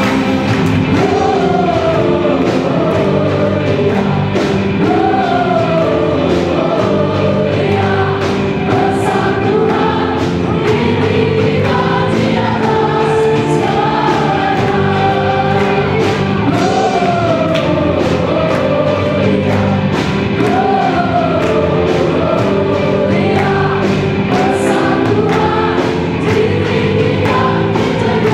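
A group of singers with band accompaniment, electric guitar and keyboard among the instruments, performing a Christian song with a steady beat.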